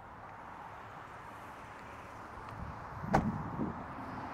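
A car door shut with a single sharp thump about three seconds in, over steady outdoor background noise.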